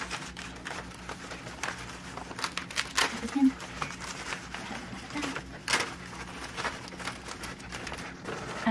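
Fabric rustling and scratchy crackles of hook-and-loop Velcro as the grid's edges are pressed into the softbox rim, with a cluster of louder rasps about three seconds in and another near six seconds.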